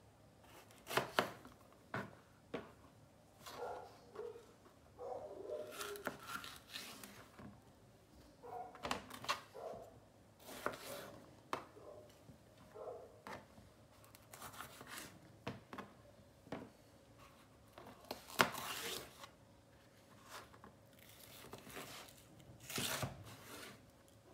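Fresh red peppers being cut and pulled apart by hand on a plastic cutting board: scattered crisp snaps, tearing and light knocks on the board, the loudest about three-quarters of the way through.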